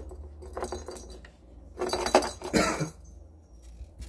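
A kitten batting a small plastic jingle-ball cat toy: a few light jingles, then a louder burst of jingling and rattling over litter pellets about two seconds in.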